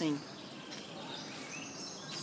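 Quiet forest ambience with scattered faint, high bird chirps and a thin high whistle.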